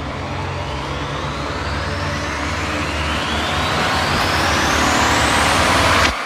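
Synthesized riser sound effect: a noisy swoosh climbing steadily in pitch and getting louder for about six seconds over a low rumble, then cutting off abruptly at the end.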